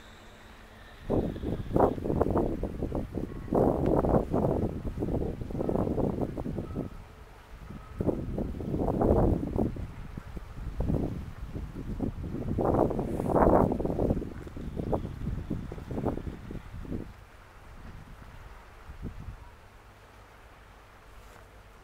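Wind buffeting the microphone in irregular gusts of low rumbling noise, starting about a second in and dying down near the end.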